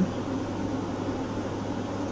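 Steady background noise: an even hiss with a low hum underneath, holding level throughout.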